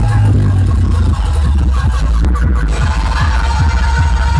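Loud DJ music played through a large outdoor sound system, with a steady deep bass that is the loudest part.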